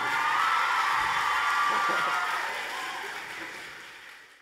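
Audience applauding and cheering, with high-pitched shrieks and whoops over the clapping, fading away over the last second or so.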